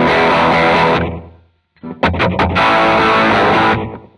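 Distorted electric guitar power chords from a red SG-style guitar through a Line 6 Helix preset's 'Dad Rock' snapshot. A chord rings and fades away about a second in; after a short gap come a few quick stabs and a held chord that is cut off just before the end.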